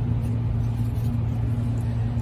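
A steady low background hum with a fainter, higher tone above it, unchanging throughout.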